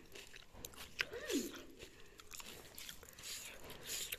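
Crisp bites and chewing on a slice of raw cucumber, a run of short crunches with the sharpest about a second in.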